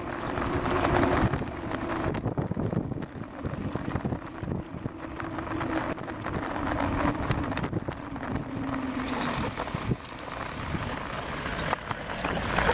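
Wind buffeting the microphone of a handlebar-mounted camera, over the rumble and rattle of a bicycle rolling along a paved path, with scattered clicks.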